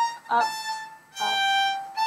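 Solo violin playing slow, sustained bowed notes in G minor: three notes, each a step lower than the one before.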